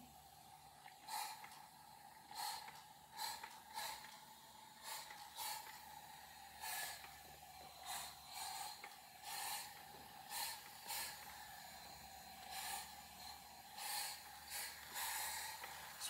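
Hand-held spray bottle misting in about twenty short hisses, one or two a second, wetting powdered pigment and wash on a painted dresser so the colours start to run.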